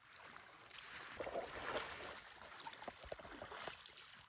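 Faint, irregular splashing and sloshing of river water as people wade waist-deep through it.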